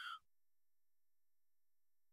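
Near silence: a pause in the narration, with only the faint tail of a spoken word at the very start.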